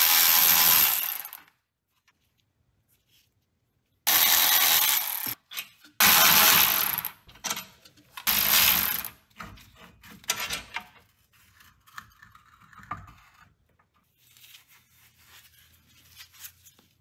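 Cordless electric ratchet spinning out the four 14 mm bolts that hold the rear wheel hub bearing, in four bursts of about a second each. Fainter knocks and clinks follow.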